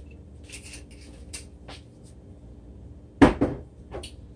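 Kitchen handling noises on a countertop: a few faint clicks and taps, then a loud thump a little over three seconds in and a smaller knock just before the end.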